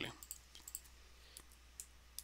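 Faint, scattered clicks from a computer mouse and keyboard.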